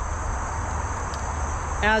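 Steady outdoor background noise: a low rumble of freeway traffic with a continuous high-pitched buzz over it.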